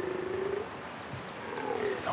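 Corsican red deer stag bellowing (belling) in the rut: one long hoarse call ends under a second in, and another begins a little past halfway. It is the male's rutting call, asserting his presence and territory to rivals and hinds.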